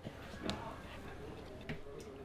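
A few faint, sharp clicks from a sticky piece of candied pumpkin with walnuts being pulled apart by hand and bitten. The clearest click comes about half a second in and another near the end, over quiet room tone.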